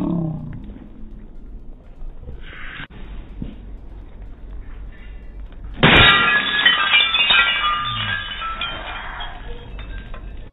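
A glass bulb thrown against the steel truck of a freight car, shattering about six seconds in with a sudden loud smash followed by glass pieces tinkling and ringing as they scatter for a few seconds.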